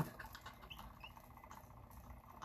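Faint pattering with a few small ticks as fine silver glitter is sprinkled from a cup onto a turning epoxy-coated tumbler.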